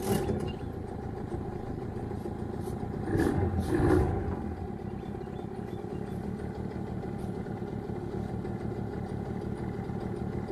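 A small outboard motor running steadily at low speed, pushing a jon boat slowly along the bank. There is a short knock at the start and a louder clatter about three to four seconds in.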